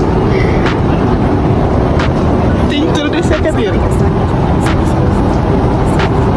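Steady airliner cabin noise, a constant low rumble of engines and airflow, with a few short clicks and brief voices in the background about three seconds in.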